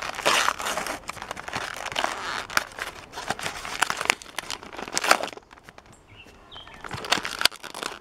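Cardboard backing of a toy car's blister pack being torn and peeled away by hand, with dense crinkling and tearing for about five seconds, a short lull, then more crinkling near the end.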